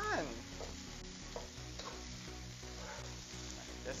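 Wooden spatula stirring and tossing fried rice in a hot wok, with a steady sizzle and a few light knocks of the spatula against the pan.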